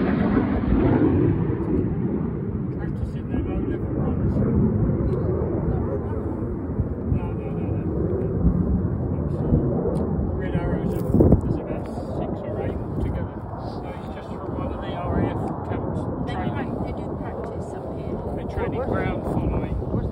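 Aircraft flying low overhead and moving away: loud at the start, then its noise fades and grows duller over several seconds, leaving a low rumble.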